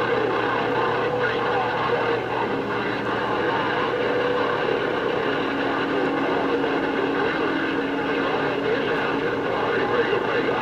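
Galaxy CB radio receiving a crowded channel: steady static hiss with whining heterodyne tones and garbled, overlapping transmissions from several stations at once, the cross-talk of doubled-up signals. A low whistle comes in about five seconds in and drops out near the end.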